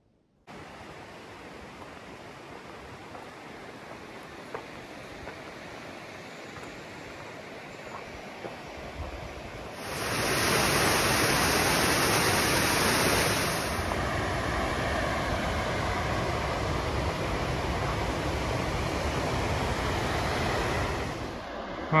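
Steady rush of a cascading mountain waterfall running high. It grows slowly louder, is loudest for about four seconds near the middle, then settles a little lower and steady.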